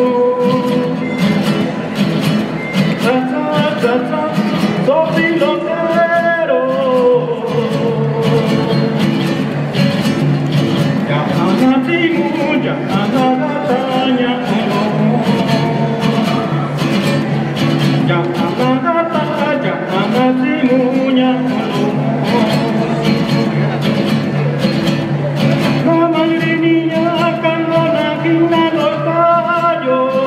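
Acoustic guitars strumming a steady rhythm, with a man's singing voice coming in for several phrases and dropping out between them.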